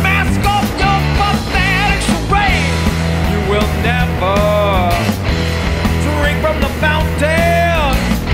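Loud grunge/punk-style rock music: a drum kit (Yamaha Tour Custom drums, Sabian cymbals) driving an instrumental passage under heavy guitars. A high melodic line bends up and down in pitch, wobbling about two seconds in and arching twice later on.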